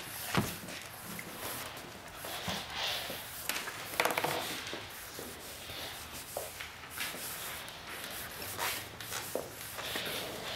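Wide-tip ink marker drawn across cardboard in short scratchy strokes, with a sharp knock just after the start.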